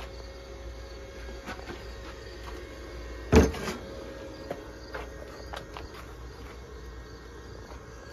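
One loud, sharp metal clunk about three seconds in, then a few lighter clicks, as steel seat-runner parts and tools are handled on a worktable. Crickets chirp steadily in the background.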